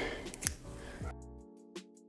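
A few sharp scissor snips trimming hair ends in the first second, over background music; about a second in the room sound cuts out and only the music is left, steady chords with short plucked notes.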